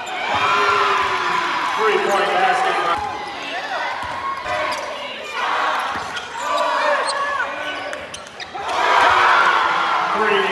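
A basketball dribbled on a hardwood court during live play: sharp repeated bounces, with voices calling out across the gym.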